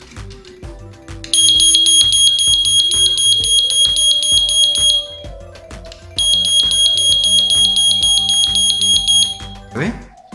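Photoelectric smoke detector's built-in siren sounding on a push-button test: two long, loud, high-pitched blasts of about three and a half seconds each, with a short break between, showing that the alarm works when tested.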